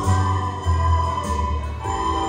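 Music: an ensemble of students playing a Christmas tune on flutes, holding long steady notes over a low bass accompaniment that changes note every second or so.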